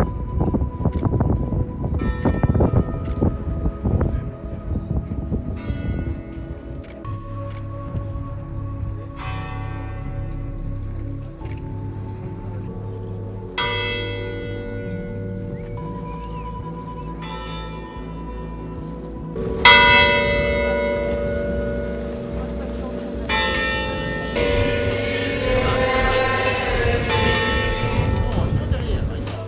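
Church bell tolling a funeral knell: single strikes every few seconds, each ringing on and slowly dying away. The loudest strike comes about two-thirds through, and the strikes come closer together near the end.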